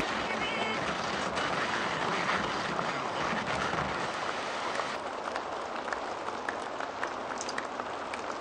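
Rain ambience in a lo-fi track: a steady hiss of rain noise with scattered faint crackles and no beat.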